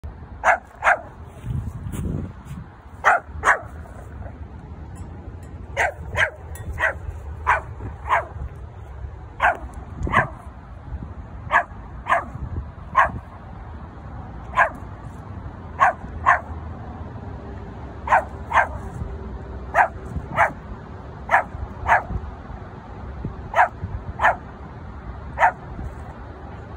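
Pomeranian barking repeatedly: short, sharp, high yaps, often in quick pairs, coming every second or two throughout.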